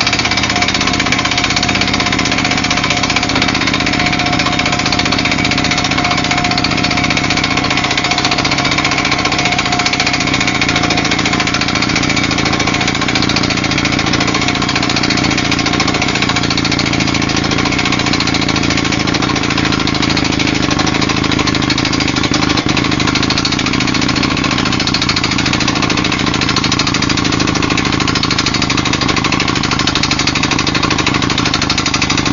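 Roof-bolting drill rig running steadily in a coal mine: a loud, unbroken machine noise with a constant hum under it.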